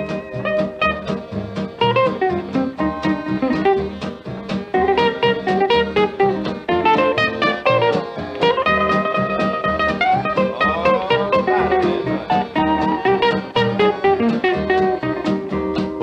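Instrumental break of a 1946 country band recording. A plucked-string lead plays over rhythm guitar and bass, with a few sliding notes about ten seconds in.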